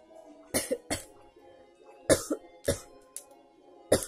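A woman coughing in short bursts, about five times, into her hand, over a bed of soft background music with sustained tones.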